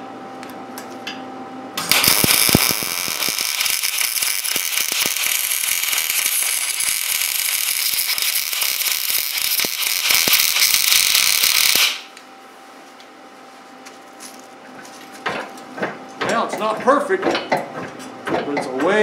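Wire-feed welder arc crackling steadily as a steel bushing collar is welded onto the blade's angle pivot. The arc strikes about two seconds in, runs for about ten seconds and cuts off suddenly.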